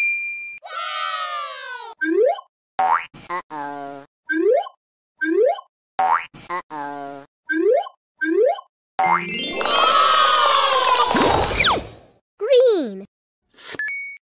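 Edited-in cartoon sound effects: a falling tone, then a string of short rising boing-like bloops with a few clicks, and near the end a longer, busier burst of overlapping glides.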